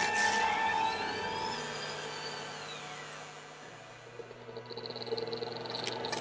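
Eerie electronic film sound design: a hit that fades away under steady low tones, with a high tone gliding up and back down through the first few seconds, then a thin high tone and a building swell near the end.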